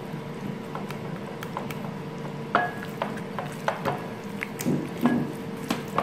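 Hands massaging raw chicken drumsticks with minced garlic and ginger in a bowl: soft wet squishing and rubbing with scattered light knocks against the bowl, a little busier near the end, over a faint steady hum.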